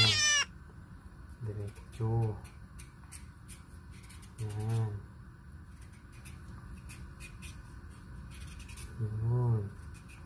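Carrot being peeled by hand with a blade over a plastic cutting board: faint, repeated short scraping strokes. A few short, low murmured voice sounds come in between, a couple of seconds in, around the middle and near the end.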